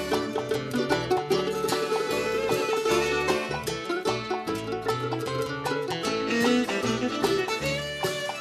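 Bluegrass band playing an instrumental break, with picked and bowed string instruments over a steady pulsing bass line.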